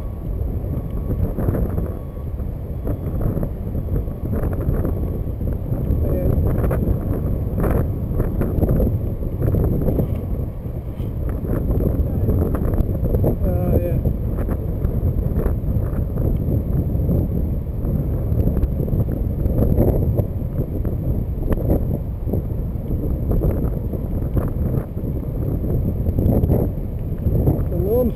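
Wind buffeting the microphone of a bicycle-mounted camera while riding, mixed with tyre noise on a wet path and scattered knocks from the bike.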